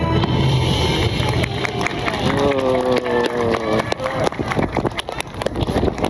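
Music from a street performance ends within the first second, followed by a voice over crowd noise with many scattered sharp clicks.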